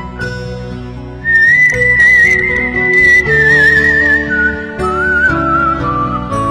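Whistled melody over a soft instrumental accompaniment. About a second in it rises to a long high note with vibrato, held for about three seconds, then steps down to lower notes.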